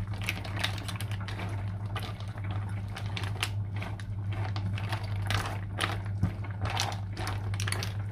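Sauce bubbling and popping in a frying pan around cooked mussels that have all opened, an uneven run of small crackles and pops. A steady low hum runs underneath.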